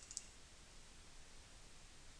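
A single short mouse click just after the start, then near silence: room tone.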